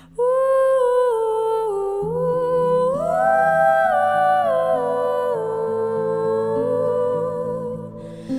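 A female singer holding a long, wordless "ooh" melody. She sustains each note and glides up to higher notes about two to three seconds in, then steps back down, over soft, low, sustained accompaniment.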